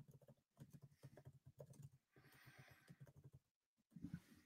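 Near silence with faint, irregular tapping on a computer keyboard.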